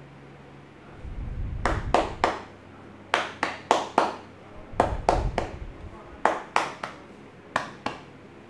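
Sharp hand slaps of a percussive tapping massage on the shoulders and upper back, coming in quick groups of three or four, with dull low thumps under the first groups.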